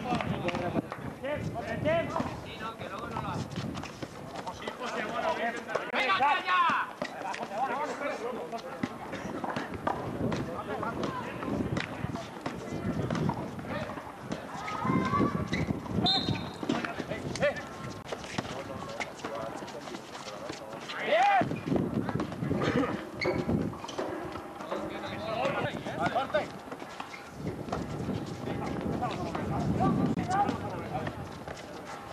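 Shouting voices of players and onlookers at a basketball game, with scattered sharp slaps of a bouncing basketball and running sneakers on a concrete court.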